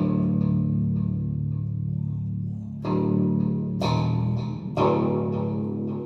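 Eight-string electric guitar playing heavy low chords: the first is struck and left to ring for nearly three seconds, then three more follow about a second apart.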